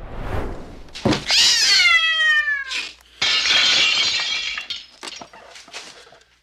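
A cat's long screeching yowl, falling in pitch, about a second in, followed by glass shattering as the cat breaks through a window pane.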